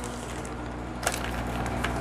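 Quiet room tone with a steady low hum and one faint click about halfway through.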